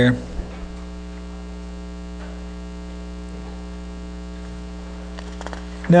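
Steady electrical mains hum: a low, unchanging buzz with a stack of evenly spaced overtones. A man's voice starts right at the end.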